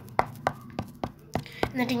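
Sharp, evenly spaced clicks or knocks, about three a second, over a low steady hum; a woman's voice comes in near the end.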